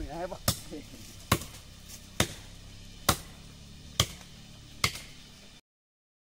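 A blade chopping into a standing tree trunk: six sharp strikes about one a second, with all sound cut off abruptly shortly before the end.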